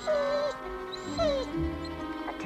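A dog whimpering twice over background music: a short whine at the start, then a second whine falling in pitch a little past a second in.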